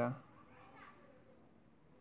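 Near silence in a home room, with faint voices far in the background.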